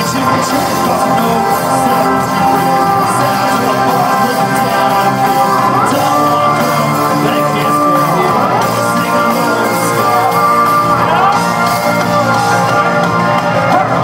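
Live rock band playing loud with electric guitars, keyboard and drums, heard from within the audience with the hall's echo.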